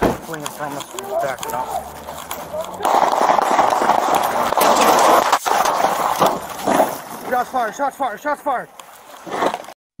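Police officers' voices talking and shouting over a body-worn camera microphone during a vehicle chase. A loud rushing noise covers the voices for about three seconds in the middle.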